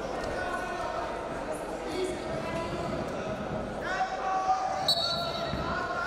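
Voices calling out in a large, echoing hall over two wrestlers hand-fighting on the mat, with dull thumps of feet and bodies. There are a few sharp knocks and a brief high squeak about four to five seconds in.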